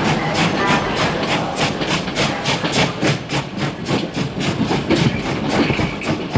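Train running on the rails, its wheels clicking over the rail joints in a quick even rhythm of about five clicks a second over a low rumble.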